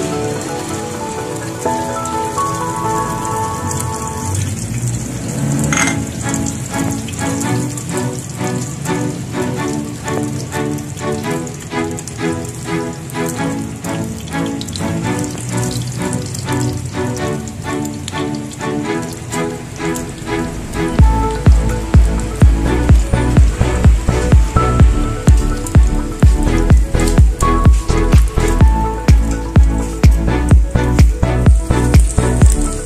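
Beaten egg mixture sizzling and crackling as it fries in hot oil in a pan, under background music. About two-thirds of the way through, the music gains a heavy regular beat that becomes the loudest sound.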